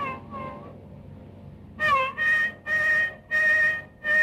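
Carnatic violin playing a phrase in raga Kedaragowla: a held note with a pitch slide fades out in the first second, a brief quiet lull follows, then from about two seconds a string of short separate bowed notes with slides between pitches.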